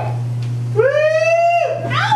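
A high voice whooping 'woo' in long calls that glide up, hold, then fall away. One call tails off as the stretch begins, a second runs from just under a second in to near the end, and a third starts and drops at the very end, all over a steady low hum.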